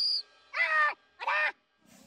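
Two short, high-pitched nonverbal cries from a cartoon-style voice, each rising then falling in pitch, about half a second apart. A brief high whistle-like tone cuts off just at the start.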